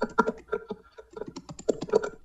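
Typing on a computer keyboard: a quick, irregular run of keystrokes.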